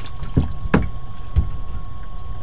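Water sloshing in a sink as a desktop computer power supply is pushed under and moved about by hand, with three short low sloshes in the first second and a half.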